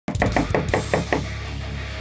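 Rapid knocking on a door, about seven quick knocks in a little over a second.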